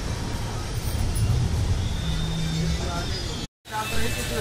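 Malwa Express passenger train running, heard from inside the coach: a steady rumble and rolling noise with faint voices over it. The sound cuts out for a moment near the end.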